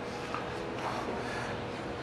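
Steady background room noise with a faint constant hum, and no distinct event.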